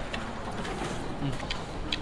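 Faint mouth sounds of a man chewing a mouthful of grilled fish, a few soft clicks over a low steady background hiss.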